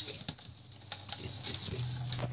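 Light, scattered clicks and taps of a plastic hamster ball being handled and picked up off a wooden floor, with one sharper click at the start.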